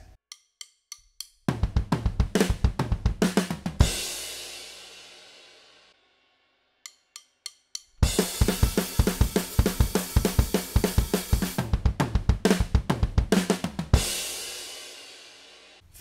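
Drum kit played fast: a punk/hardcore beat and fill with snare, bass drum and cymbals, played twice. Each take is counted in with four quick clicks and ends on a crash cymbal that rings out, the first take short, the second about six seconds long.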